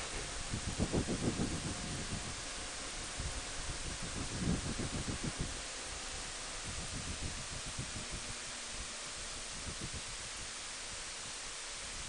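Wind noise from riding a motorcycle at road speed: a steady rushing hiss on the camera microphone, with low buffeting surges about a second in and again around five seconds.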